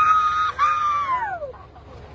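A man's high-pitched shout in two long held cries, the second sliding down in pitch as it fades.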